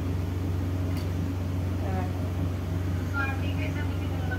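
A steady low hum runs under faint, brief voices.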